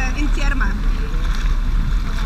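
Underwater massage jets in a thermal spa pool churning the water: a steady rushing with a heavy low rumble.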